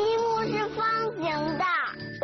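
A young child's drawn-out, sing-song voice over light children's background music, with a falling swoop in pitch near the end.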